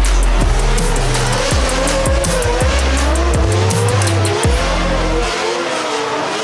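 Drift cars revving and tyres squealing, mixed over a music track with a heavy stepping bass line and quick high percussion. The bass stops shortly before the end.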